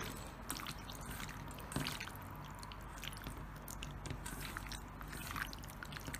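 A hand mixing raw prawns through a wet spice marinade in a stainless steel bowl: faint squelching with many small scattered clicks.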